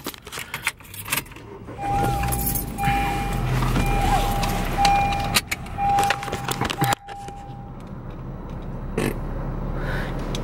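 A Honda car's dashboard warning chime beeping over and over for several seconds, with a steady low hum under it. Keys jangle and sharp clicks from the car's fittings sound around it, one near the start and a few later.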